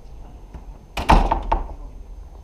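A door clunking: a quick run of three or four knocks and thuds about a second in, like a latch and a door swinging shut.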